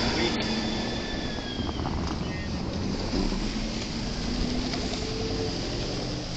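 Steady city street traffic: cars passing on a slushy, snow-covered road, with a continuous low rumble.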